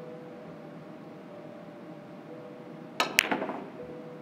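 Three-cushion carom billiards shot: about three seconds in, a sharp click of the cue tip on the cue ball, then a louder click of ball on ball a fifth of a second later, with a short rattle as the balls run on. Before it, only a low steady hall hum.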